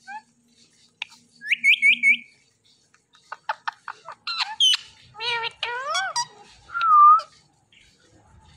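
Indian ringneck parakeets calling: a quick run of chirpy whistles, a series of sharp clicks, then squawks and chattering calls. Near the end comes a loud held whistle, the loudest sound.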